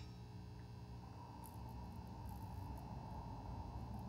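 Steady low electrical hum from the running high-voltage RF apparatus, with a few faint high crackles about a second and a half in.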